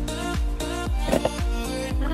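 Background pop music with a steady, heavy bass beat.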